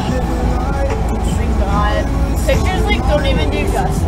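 Steady low rumble of road and engine noise inside the cabin of a moving Audi, with a voice over it from about a second in.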